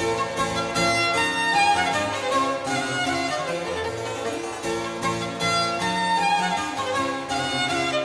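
A violin and harpsichord playing Baroque music together, the bowed violin line over the harpsichord's plucked notes. The violin is a 1664 Jacob Stainer instrument.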